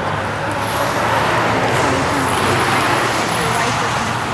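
Road traffic noise: a vehicle passes by, swelling in the middle and easing off, with faint voices underneath.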